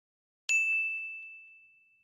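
A single bright ding sound effect: one sharp strike about half a second in, ringing on one high tone and fading away over about a second.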